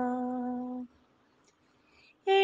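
A woman's singing voice holding one long, steady note at the end of a phrase of a Malayalam poem; the note stops a little under a second in, and silence follows.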